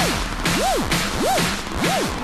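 Electronic dance music build-up with no bass: a synth tone swoops up and back down about every two-thirds of a second, with bursts of noise between the swoops.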